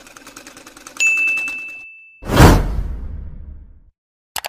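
Outro sound effects. A fast, even sewing-machine stitching rhythm fades out, a single bell-like ding sounds about a second in, and a loud sudden whoosh-like hit comes about two seconds in and dies away.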